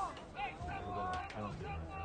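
Indistinct voices calling out in the distance, short shouts over a low steady hum.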